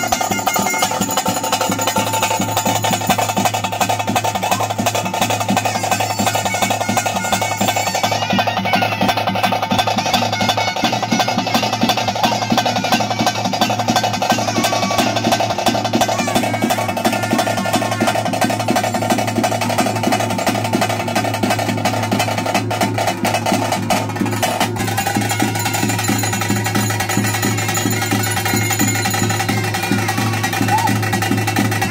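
Ritual drums beaten with sticks in a fast, continuous roll, over a steady drone.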